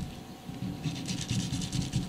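Long kitchen knife sawing into a plastic-wrapped multipack of toilet paper rolls: a short knock at the start, then a rapid scraping rasp of quick back-and-forth strokes that grows busier from about a second in.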